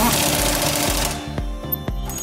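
Air impact wrench running down the nut on the front strut's lower mounting bolt: a loud rattling hammer with air hiss that stops about a second in. Background music with a steady beat plays throughout.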